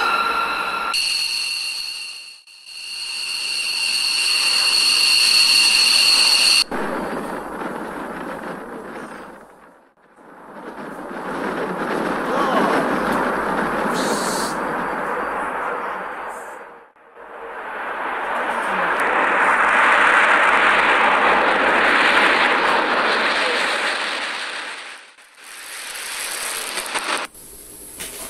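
Jet engines of a B-2 Spirit bomber (four General Electric F118 turbofans): a high turbine whine at first, broken off sharply about seven seconds in. Then three long swells of jet noise follow, each building and fading over several seconds, as the aircraft taxis and takes off.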